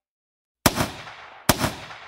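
Two gunshot sound effects in the intro of a hip-hop track, the first about half a second in after silence, the second near the end, each a sharp crack with a ringing tail.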